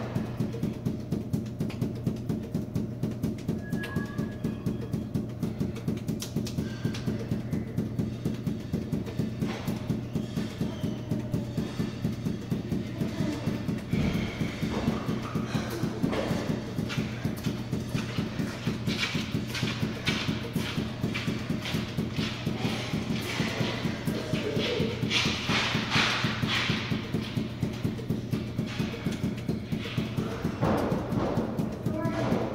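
Five juggling balls force-bounced off a hard floor, landing in a fast, even rhythm of thuds, with a steady low hum underneath.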